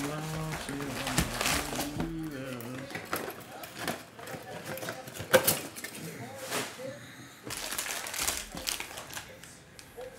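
Cardboard trading-card box being emptied and its plastic-wrapped card packs handled and stacked on a table: rustling and crinkling wrappers with irregular clicks and knocks, the sharpest about halfway.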